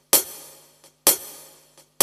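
Percussive count-in on a karaoke backing track: sharp hits, each fading out, about once a second in time with the slow tempo, each with a faint tick just before it. The third hit falls near the end, just before the band comes in.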